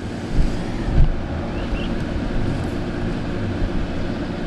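Steady low machine hum under a haze of outdoor noise, with two brief low rumbles on the microphone in the first second.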